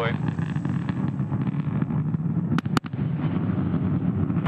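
Falcon 9 side booster's single Merlin 1D engine firing its landing burn: a steady low rumbling roar with crackle, and two sharp cracks about two and a half seconds in.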